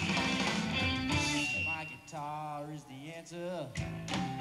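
Live electric blues band: lead electric guitar playing over bass and drums. About halfway through the backing thins and a single held note sounds, wavering in pitch, until a short break near the end.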